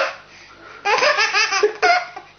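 A baby laughing hard: a high squeal sliding down in pitch at the start, then, about a second in, a quick string of breathy laughs, and one more short laugh near the end.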